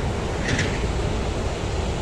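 Wind buffeting the microphone outdoors: a steady low rumbling noise with a faint hiss above it.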